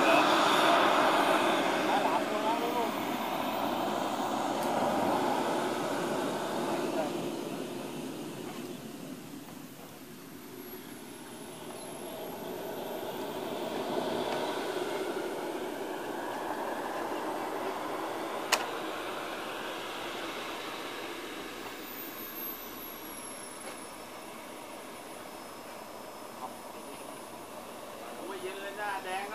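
Radio-controlled model jet taxiing: a rushing engine noise that is loudest at the start, fades, swells again midway and then fades, with a thin high whine that slides down and back up in pitch. A single sharp click about two thirds of the way through.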